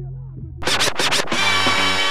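Outro jingle music that opens with three quick turntable record scratches and settles into a loud, sustained chord.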